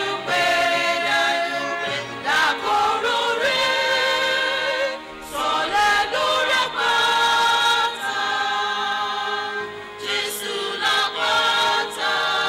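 Church choir of men's and women's voices singing together through microphones, with held notes and some vibrato.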